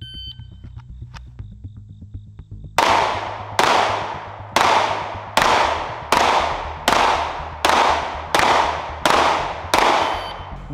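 Pistol fired at a slow, even pace: about ten shots, roughly one every 0.8 seconds, beginning about three seconds in, each followed by a short echo.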